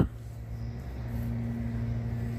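Steady low mechanical hum, with a second, higher steady tone joining about a second in.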